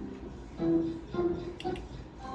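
Novoline slot machine's electronic game sounds during a free spin: three short musical notes about half a second apart as the reels come to rest.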